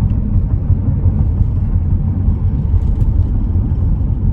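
Steady low rumble of a Chrysler minivan's engine and tyres heard from inside the cabin while cruising at a constant speed.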